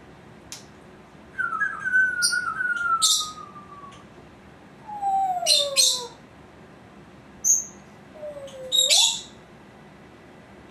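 Congo African grey parrot calling: three gliding whistles, the first two falling in pitch and the last dipping and then rising, mixed with short, sharp, high-pitched chirps and clicks.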